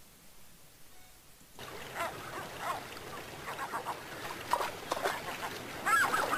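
Near silence for about a second and a half, then a sample video clip starts playing back: gulls calling repeatedly over the steady rush of river water, the calls growing louder toward the end.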